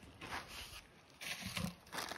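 Faint rustling and handling noise in two short bursts, about a third of a second and a second and a half in.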